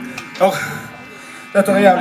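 A man's voice shouting two short phrases through the PA microphone, over a steady electric hum from the stage amplifiers while the band is not playing.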